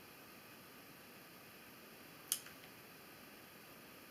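Quiet room tone with one short, sharp click a little past halfway.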